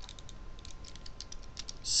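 Light, irregular clicking of the plastic parts of a knockoff G1 Optimus Prime Transformers figure as it is twisted and folded by hand during transformation.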